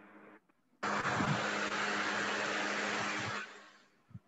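A loud, steady rushing noise with a low hum, starting suddenly about a second in and fading out near the end.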